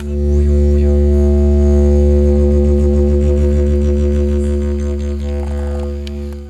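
Didgeridoo playing one steady, deep drone with a faint even pulsing through it, easing off slightly near the end.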